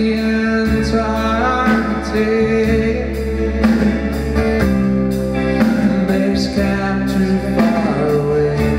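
Live rock band performance: a male voice singing over a strummed acoustic guitar, bass and a drum kit with regular cymbal hits.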